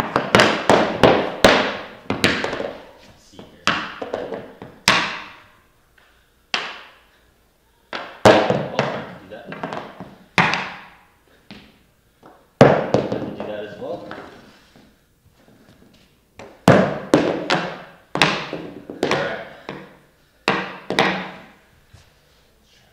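A hockey puck bounced and batted on the blade of a hockey stick: clusters of sharp taps, several in quick succession, with short pauses between tries. Each tap rings out in a large, hard-floored room.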